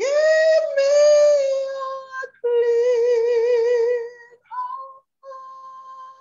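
A woman singing a gospel song unaccompanied, holding long notes with vibrato at the song's close. The last note, from about four and a half seconds in, is quieter.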